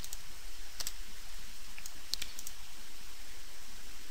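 A few sharp computer mouse clicks, one about a second in and a quick cluster a little past the middle, over a steady background hiss.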